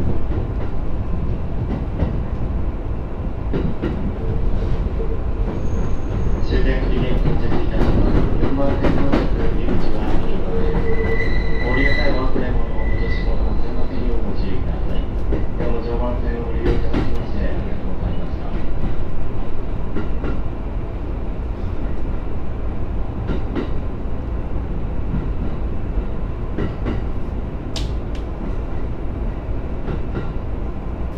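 E231-series electric commuter train running into a station, heard from inside the driver's cab: a steady rumble of wheels and running gear with scattered clicks over the rail joints. Squealing tones sound for a few seconds around the middle as the train slows along the platform.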